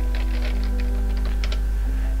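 Computer keyboard being typed on: a quick, irregular run of keystroke clicks as a word is typed out, over a steady low hum.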